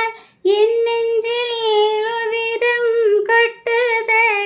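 A woman singing a Tamil song unaccompanied, holding long high notes, with a short breath just after the start and another about three and a half seconds in.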